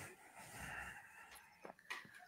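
Near quiet: a short, soft breath or breathy exhale into a microphone about half a second in, then two faint clicks near the end.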